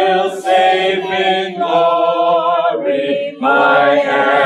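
Group of people singing a hymn together without instruments, in long held notes, with a short break between phrases about three seconds in.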